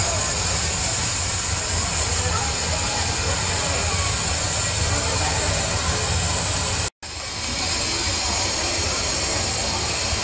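5/12-scale live steam locomotive hissing steadily, a high steam hiss over a low rumble with no exhaust beat. It drops out for an instant about seven seconds in.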